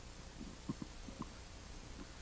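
Quiet hall room tone with a steady faint hum, broken by a few short, faint low knocks and rustles about a second in.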